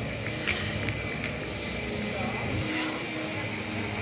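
Outdoor walking ambience: a steady low rumble with indistinct voices of people nearby and a few small ticks.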